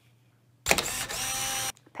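A short edited-in sound effect marking the segment transition. It starts sharply after a half-second pause, holds steady for about a second with several ringing tones over a noisy wash, and cuts off suddenly.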